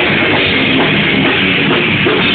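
Metalcore band playing loud and dense: pounding drum kit under distorted electric guitars, steady throughout with no vocals on top.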